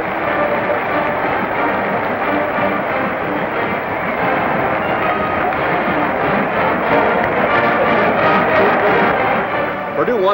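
Marching band music playing steadily, a little louder near the end.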